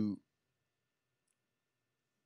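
A man's voice trails off in the first quarter second, then silence.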